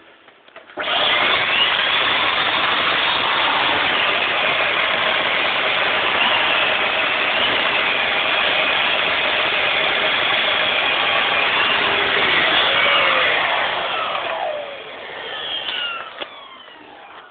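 Numatic cylinder vacuum cleaner with an air-driven Airo turbo brush, switched on about a second in and running steadily over carpet with a loud, even rush and whine. Near the end the pitch falls and the sound drops away.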